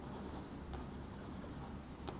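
Crayola Ultra-Clean Washable crayon drawn in quick back-and-forth hatching strokes across damp paper, a faint, steady scratchy rubbing.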